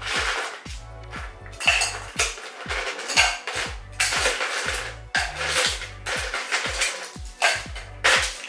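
Ice cubes being scooped from an ice bucket and dropped into a metal cocktail shaker tin, clinking and rattling, over background music with a steady low beat.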